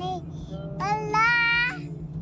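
A child singing, with one long held note in the middle, over the steady low drone of a car driving.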